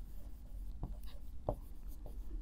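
Marker pen writing on a whiteboard: faint strokes with a couple of light taps, one near the middle and one about one and a half seconds in.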